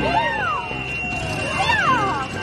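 Two high-pitched shouts from a person, each rising then falling in pitch: one right at the start and one about a second and a half later.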